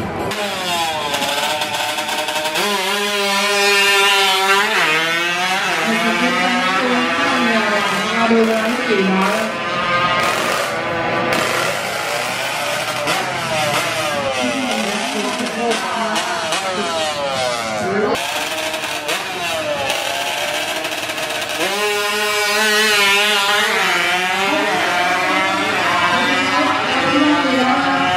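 Tuned Honda Wave drag bike's small single-cylinder four-stroke engine revving hard at full throttle, its pitch climbing and dropping back repeatedly as it shifts up through the gears on a quarter-mile run.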